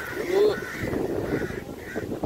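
Crows cawing, a run of short harsh caws about two a second, with a brief vocal sound, the loudest moment, near the start.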